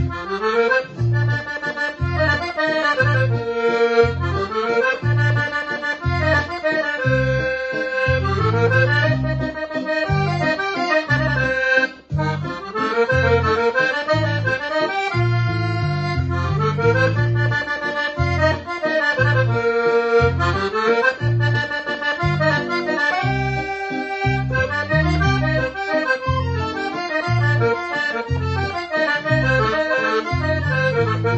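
Piano accordion playing a waltz: a right-hand melody in running phrases over a steady bass beat. There is one brief break about twelve seconds in.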